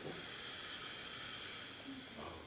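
A faint, steady hiss that starts suddenly and holds level for about two seconds.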